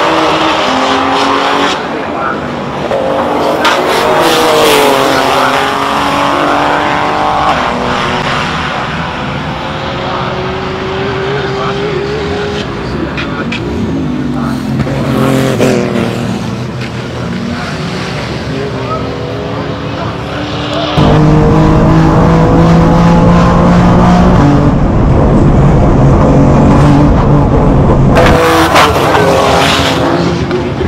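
Nissan GT-R R35's 1200 hp 3.8-litre twin-turbo V6 race engine at full throttle on a hillclimb run, the revs climbing and dropping again and again with each gear change. About 21 s in, a louder, deeper and steadier engine note takes over for several seconds.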